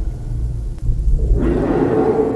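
Logo intro sound effect: a deep, loud rumble, joined about one and a half seconds in by a noisy, crash-like swell.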